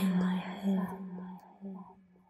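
Background music, a sustained low note with a soft breathy haze, fading out to near silence by about three quarters of the way through.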